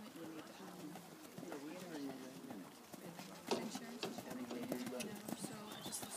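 Horse's hooves on a sand arena at a trot, a run of soft knocks that starts about halfway through and gets louder as the horse comes close.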